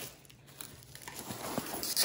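Clear plastic shrink wrap being peeled off a long cardboard kit box: faint crinkling and rustling, growing louder toward a brief rustle near the end.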